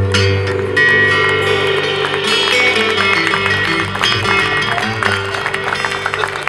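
Live acoustic band playing an instrumental passage of a bluegrass gospel tune: strummed and picked acoustic guitars over an upright bass and light drums.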